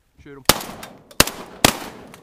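Three shotgun shots in quick succession, roughly half a second apart, each followed by a short ringing tail.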